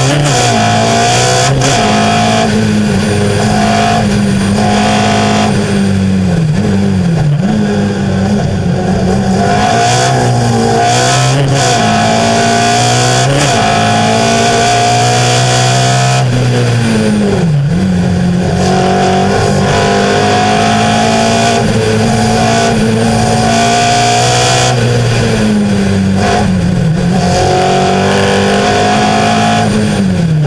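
A slalom race car's engine heard on board, revving hard under acceleration and dropping in pitch again and again at each gear change and braking point, then climbing once more.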